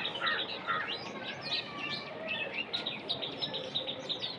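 Small birds chirping in the background, a quick run of short, high chirps throughout.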